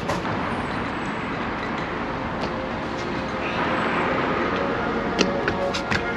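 Road traffic: a steady rush of tyres and engines that swells a little about four seconds in as a vehicle goes by, with a couple of light clicks near the end.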